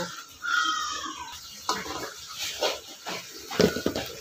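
A spatula scraping and knocking against a karai as fried potato wedges are turned in hot oil, in short irregular strokes. There is a brief falling tone about half a second in.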